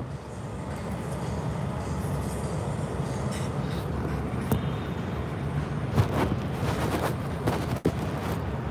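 Phone microphone handling noise: scrapes and several sharp knocks as the phone is gripped and moved in the hand, over a steady low rumble.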